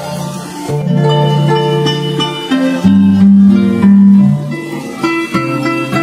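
Harps played together in an ensemble, plucking a melody over deeper bass notes. The low notes are loudest about three to four seconds in.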